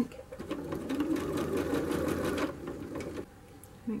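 Janome electric sewing machine stitching a seam at a steady speed, running for about three seconds and then stopping.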